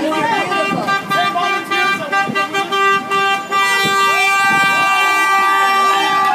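A car horn held in one long, steady blast for about six seconds, with people's voices chattering over it.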